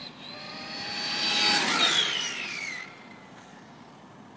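Ofna GTP 2e 1/8-scale electric on-road RC car on a speed run, its 2650kv brushless motor and drivetrain whining at a high pitch. The whine grows louder as the car approaches, peaks about two seconds in, then drops in pitch as the car passes at about 62 mph and fades away.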